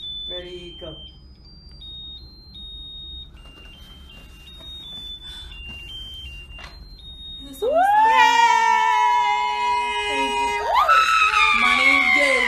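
A tinny electronic melody of single high beeps, like a musical birthday-cake candle playing a tune, runs for the first seven or so seconds. Then loud, high voices take over with long held notes that swoop upward, a second one rising higher near the end.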